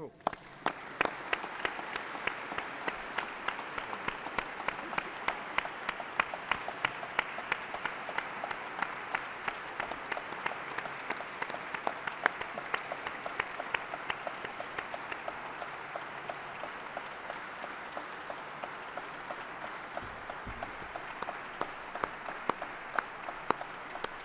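Audience giving a standing ovation: many people clapping in sustained, steady applause.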